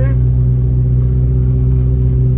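Steady low drone inside a moving car's cabin: the engine and road hum at cruising speed, even and unchanging.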